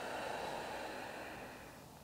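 A faint, slow exhale: a soft breathy hiss that fades away and stops shortly before the end.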